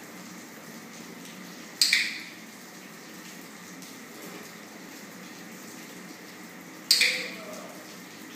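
Two sharp clicks of a dog-training clicker, about five seconds apart, each with a short echo. Each click marks the puppy holding its stay as the trainer moves, ahead of a treat.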